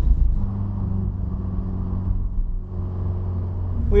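Subaru BRZ's flat-four engine running at low, steady revs, heard from inside the cabin as a low drone, with a short dip in level a little past halfway.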